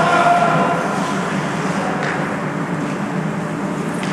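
Indoor ice hockey rink during play: a steady noisy rumble of skates on the ice and the hall, with a voice trailing off in the first second and a faint knock about two seconds in.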